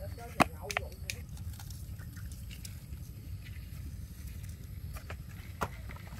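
A sharp click a little under half a second in, then a few lighter clicks and taps from utensils and a pan being handled while raw meat is salted for frying, over a steady low rumble.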